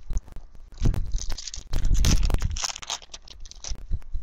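Foil wrapper of a 2014 Bowman Platinum baseball card pack crinkling and tearing as it is opened by hand, in irregular crackles that are heaviest in the middle.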